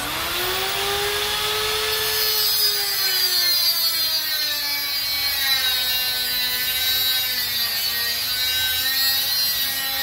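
Handheld angle grinder spinning up with a rising whine, then grinding a steel bar of a wrought-iron grille. The motor's pitch sags and wavers as the disc bites into the metal, under a harsh high grinding noise.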